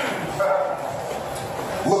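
A short drawn-out vocal sound from a person in the room, with a man's voice starting to speak again near the end.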